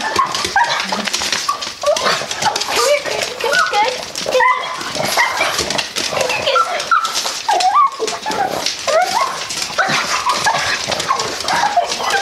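Several pugs squealing and whining in excitement, a constant run of short high cries that rise and fall and overlap one another: dogs worked up and eager for their morning breakfast.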